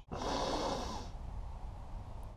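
Motor oil being poured from a jug into the engine's oil filler neck, heard faintly. A breathy hiss fills about the first second, then dies away.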